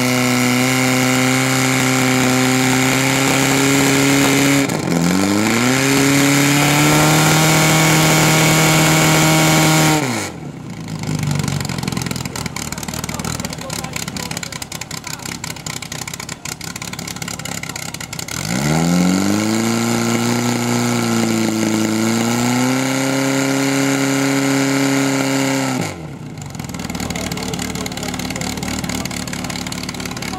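Portable fire pump's engine revved hard and held at high speed to drive water through the hose lines, stepping up in pitch about five seconds in, then cutting off about ten seconds in. A few seconds later it is revved up again, sags briefly, and drops off near the end.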